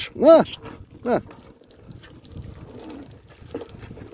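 Boiling water poured from a kettle onto a wire-mesh cage trap, a fairly quiet, steady splashing that follows two short voice-like calls in the first second or so.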